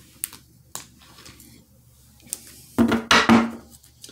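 A few light, sharp clicks of a tarot deck being handled and tapped, then a brief wordless vocal sound from the woman about three seconds in.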